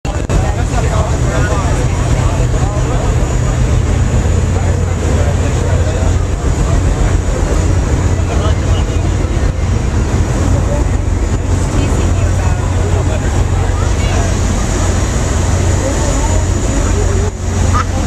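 Steady low drone of a passenger ferry's engines heard on deck, with passengers' voices chattering over it.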